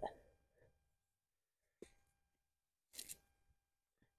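Near silence, broken by a faint click about two seconds in and two brief rustles about three seconds in, as rope hobbles are undone from a horse's front legs.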